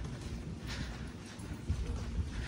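Footsteps of a person walking quickly, with the rustle and bumps of a handheld camera.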